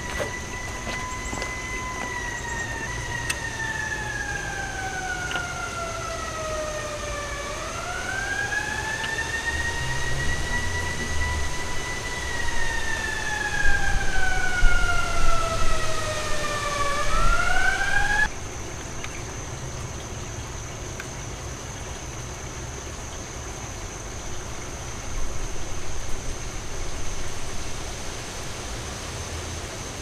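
A siren wailing, its pitch sliding slowly down and then quickly back up, twice, loudest in the second cycle; it cuts off abruptly about eighteen seconds in. A faint steady high whine runs throughout.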